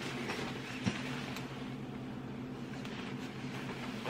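A steady low electrical hum fills the room, with faint rustling of a winter jacket's fabric and a light click about a second in as the jacket is handled.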